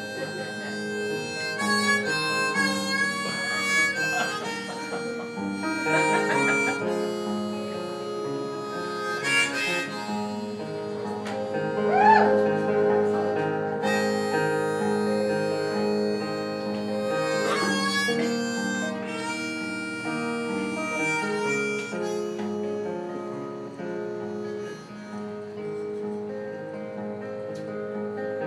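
Acoustic guitar and harmonica playing an instrumental song intro, the harmonica holding long notes with a few bends.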